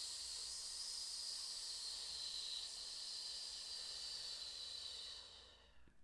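A long, slow exhale hissed out through nearly closed lips, with the tongue raised toward the top teeth to resist the air: a resisted exhale that works the diaphragm. The hiss holds steady, then fades out about five and a half seconds in.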